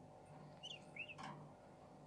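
Budgerigar giving two faint short chirps about two-thirds of a second and a second in, followed by a brief scratchy noise.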